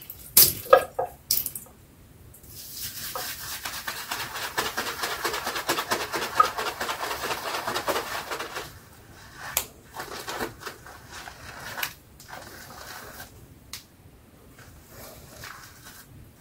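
Wet shaving brush loading a tub of Stirling shaving soap. A few sharp splats and taps come in the first second and a half, then a dense, crackly swish of bristles swirling on the soap runs for about six seconds. Shorter, intermittent swirls follow as the lather builds.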